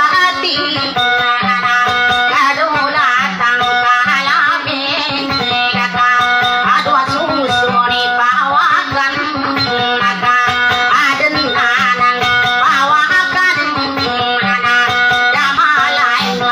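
Kutiyapi, the two-stringed boat lute, plucked in fast repeated melodic figures, with a woman's ornamented, wavering singing over it in dayunday style.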